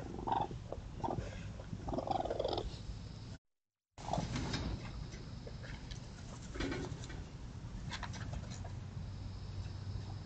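Young raccoon making a few short, low calls while it noses about in the grass, with light rustling and small clicks. Partway in there is a brief dropout to silence where two trail-camera clips are joined.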